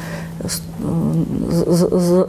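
A woman's voice: a drawn-out, level hesitation sound, then speech resuming about a second in.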